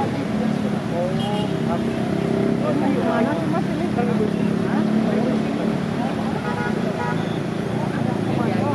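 Crowd of marchers talking over one another, no single voice standing out, over a steady low hum in the background.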